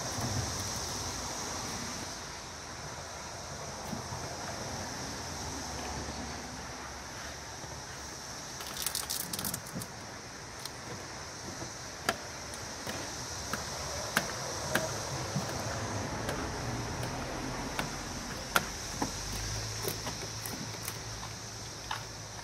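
Plastic squeegee working wet window-tint film against the inside of a minivan's rear glass: soft scraping with scattered light clicks and a brief rattle about nine seconds in, over a steady high hiss.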